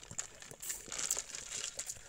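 Faint rustling and crackling with a few small clicks.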